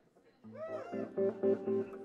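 Electric guitar and bass guitar starting to play about half a second in, the guitar bending notes up and down over held bass notes.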